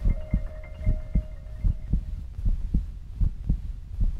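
Heartbeat sound effect: paired low thuds (lub-dub) repeating about every 0.8 s. Over the first two seconds, the held note of mallet-percussion music fades out beneath it.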